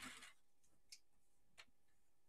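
Near silence with two faint clicks, about a second in and again just over half a second later, as a strip of cardstock is handled on a paper trimmer.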